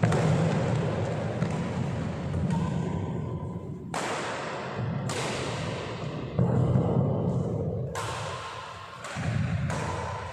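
Badminton doubles rally: about six sharp shuttlecock strikes off rackets, a second or two apart, each ringing in a large hall, over thudding footfalls on the wooden court floor.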